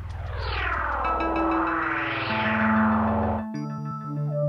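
Instrumental synthesizer electronica: held bass and chord notes under a sweeping filtered sound that falls and then rises again. About three and a half seconds in the sweep cuts off and a new held synth chord takes over.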